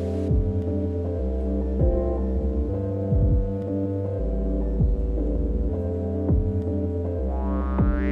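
Modular synthesizer playing slow electronic music: a deep sustained bass drone and held chord tones, with a pitch-dropping kick-like thump about every second and a half. A rising filter sweep begins near the end.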